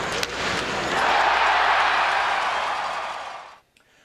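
A loud rushing noise that swells about a second in, then fades away shortly before the end, with a single click just after the start.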